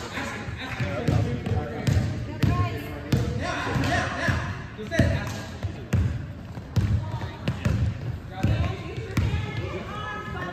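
Basketball dribbled on a hardwood gym floor: irregular sharp bounces, mixed with the voices of players and spectators in the gymnasium.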